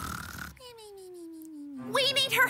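A single long falling whimper-like tone, sliding steadily down in pitch for about a second from roughly half a second in: a sad cartoon vocal sound.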